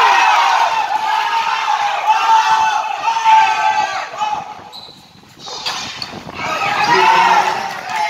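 Crowd at a basketball game shouting and cheering over one another, with a basketball bouncing. The shouting dies down briefly about five seconds in, then rises again.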